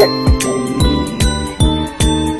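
Background music with a steady drum beat and bright, jingling chime tones.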